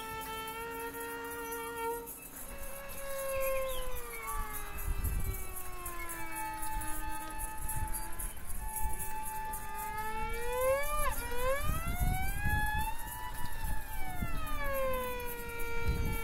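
Experimental music: a sustained pitched tone holds steady, then slides slowly down and back up in long glides, with a quick swoop about eleven seconds in. Low rumbles swell underneath twice.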